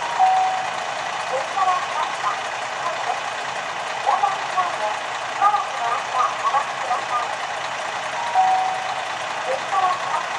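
A two-note falling chime sounds twice, about eight seconds apart, with a muffled public-address voice between, typical of a station's automatic train-approach announcement. Under it is a steady hiss, with a diesel railcar approaching in the distance.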